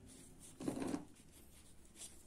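Faint rustle of hands working polyester yarn on a crochet hook, with one brief, louder soft burst a little over half a second in.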